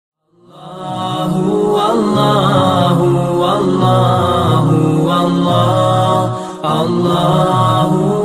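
Intro music of a chanting voice holding long, wavering notes. It fades in at the start and dips briefly about six and a half seconds in.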